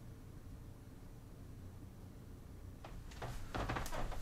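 Quiet room tone in a small room with a faint steady hum, then from about three seconds in a few soft footsteps on a wooden floor as a person walks up closer to the microphone.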